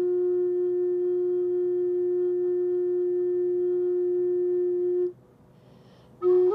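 Background flute music holding one long, pure note that stops about five seconds in.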